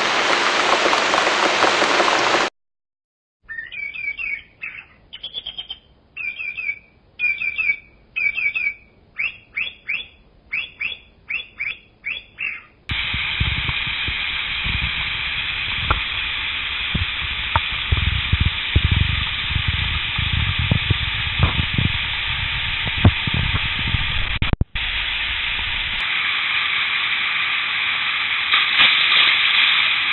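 Mountain stream water rushing over rocks, cut off after about two seconds by a brief silence. Then a bird sings about ten seconds of short repeated chirping phrases that come faster toward the end. From about 13 s on the stream's steady rush returns, with occasional low thumps.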